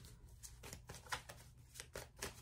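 Tarot cards being handled: a few faint, short clicks and rustles of the cards.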